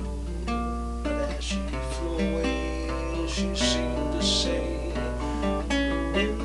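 Solo acoustic guitar playing an instrumental passage of plucked notes and chords, with a few brighter strums.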